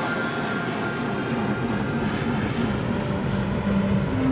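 Jet aircraft engine noise: a steady rushing sound.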